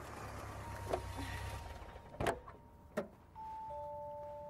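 A car door being handled: a few sharp clicks and knocks over a low rumble. Near the end two steady held tones come in, one after the other.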